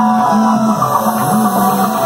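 Live rock band playing an instrumental passage: an electric guitar riff of short, quickly repeated notes over bass and drums.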